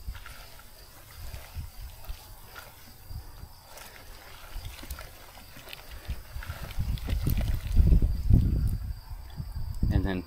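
A wooden stick stirring rabbit and chicken manure in a bucket of water, with scattered scrapes and sloshes. Heavier low rumbling comes about seven to nine seconds in.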